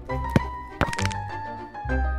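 Background music with a football kick: one sharp thud about a third of a second in, then a cluster of harder impacts just under a second in as the ball strikes the goalkeeper.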